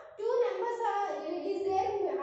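A group of children chanting in unison in a sing-song classroom recitation, resuming after a brief pause at the start.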